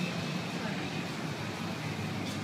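A steady low hum under general room noise, with faint voices in the background.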